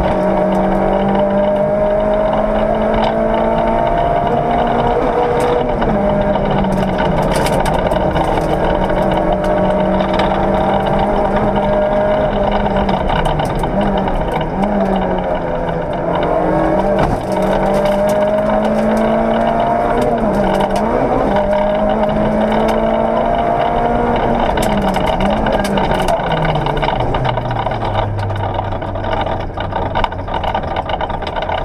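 Peugeot 106 S16 rally car's 1.6-litre 16-valve four-cylinder engine heard from inside the cabin, driven hard, its pitch climbing again and again and dropping back as it is worked through the gears. Near the end the revs fall away to a low, steady note as the car slows.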